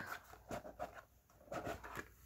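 Faint rustling and light taps of a handmade cardstock box being handled and opened, in two short spells about half a second in and again near the end.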